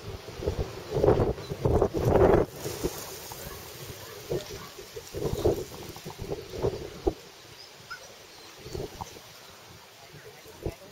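Wind gusting on the microphone: irregular rumbling buffets, the strongest in the first few seconds, with weaker gusts later on.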